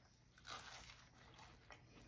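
Near silence, with faint sounds of two people biting into and chewing soft fried, icing-glazed donuts, mostly about half a second in.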